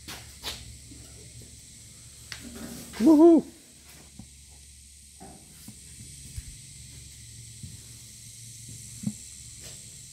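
A short wordless man's vocal sound, a hum-like "mm" that rises and falls in pitch, about three seconds in, over a low steady hum with a few faint clicks and knocks.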